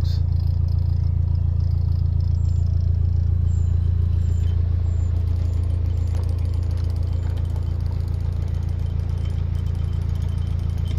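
Narrowboat's inboard engine running steadily at low revs, a deep even throb.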